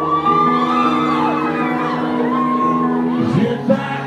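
Live rock band playing a song's instrumental opening, with electric guitar and sustained chords that change about three seconds in. Shouts and whoops from the crowd rise over the band.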